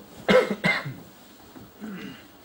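A man coughs twice in quick succession into his fist, close to a microphone.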